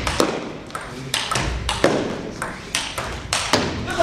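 Table tennis rally: the ball clicking sharply off the rackets and table in quick succession, about two hits a second, each with a short echo in the hall.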